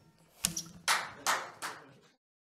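Four sharp hand claps, about two a second, as the last guitar chord dies away underneath.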